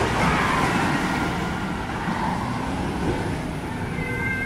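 Wooden roller coaster train rumbling steadily along its track, a continuous low roar.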